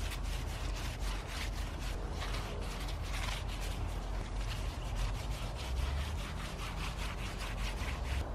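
A stain-soaked rag rubbing over the woven strands of a wicker basket planter: a steady run of short, scratchy strokes as the wood stain is worked in.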